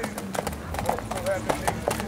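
A ridden horse's hooves clopping on a dirt road as it walks, several uneven strikes a second.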